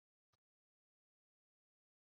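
Near silence, with one very faint, brief click about a third of a second in.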